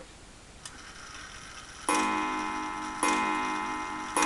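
Ansonia mantel clock striking: two ringing blows about a second apart, each dying away slowly, after a faint click. The clock is left to finish its full strike as the hands are advanced, to bring the count of the strike into step with the hands on a clock with no self-correcting mechanism.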